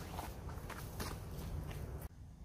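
Soft, faint footsteps and shuffling of a man in slip-on foam clogs moving beside a bedchair, a few light steps spread through the moment over a low steady rumble.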